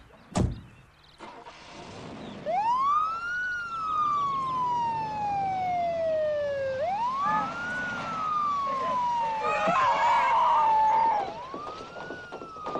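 Police car siren wailing: each cycle rises quickly over about a second, then falls slowly over about three seconds, repeating about three times. A single sharp thump comes just before the siren starts.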